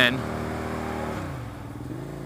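Suzuki SV650S V-twin engine running steadily, its revs dropping about a second in and settling at a lower note.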